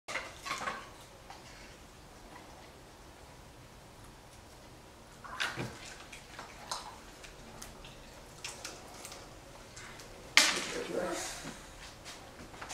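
Scattered clicks and knocks of a plastic ice cube tray being handled and ice cubes being worked loose from it, with a sudden loud knock about ten and a half seconds in; a toddler's voice between them.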